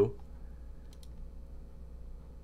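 A single faint computer click about a second in as the typed entry is submitted, over a low steady hum.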